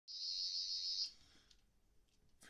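Toy sonic screwdriver emitting a high-pitched electronic buzz for about a second while its orange tip lights up, then cutting off abruptly.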